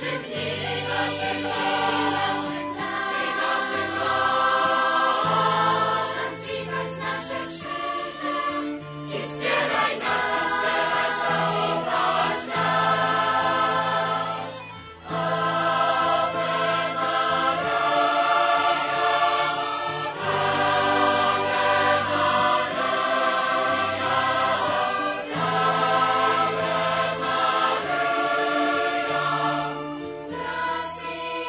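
Choral music: a choir singing slow, sustained phrases, with a brief break about halfway through.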